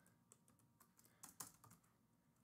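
Faint, irregular keystrokes on a computer keyboard, a handful of soft clicks.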